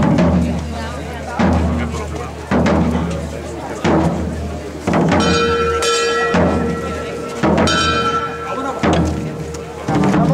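Procession drums beating a slow, steady march, a stroke about every second and a quarter, over a low steady hum. Two brief high ringing tones sound in the second half.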